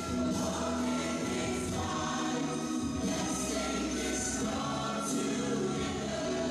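A choir singing a gospel worship song with band accompaniment, in long held notes.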